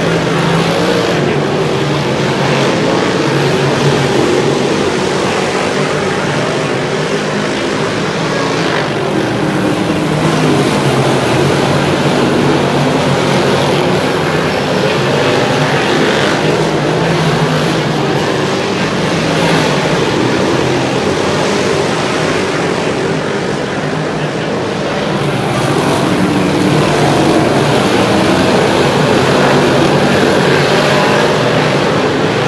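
A field of 358 Modified dirt-track race cars running laps, their small-block V8 engines blending into one loud, steady, wavering drone that swells and eases as the pack goes around, a little louder near the end.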